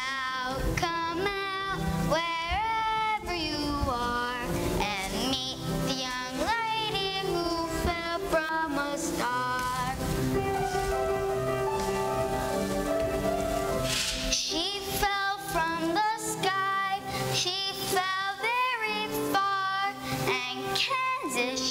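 Children singing a stage-musical song over instrumental accompaniment, the sung line pausing for held notes partway through and then picking up again.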